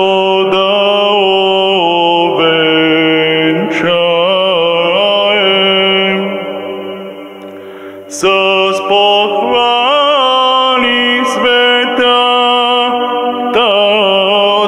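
A man singing ornamented Bulgarian Orthodox chant into a handheld microphone, with a steady low note held beneath the melody. The voice fades about six seconds in and comes back strongly about two seconds later.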